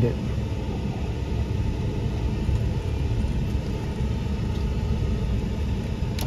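Steady low rumble inside a Ford F-150 pickup's cab as it drives slowly over a sand track: engine and tyre noise, with the air-conditioning fan running.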